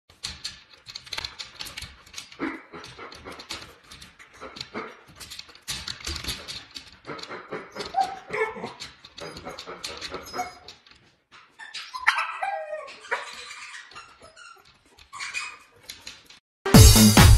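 Siberian husky giving short pitched vocal calls, a few about halfway through and a longer run near three-quarters of the way, among scattered light clicks and knocks.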